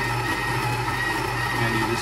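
Breville burr coffee grinder's motor running steadily, grinding espresso beans into the portafilter.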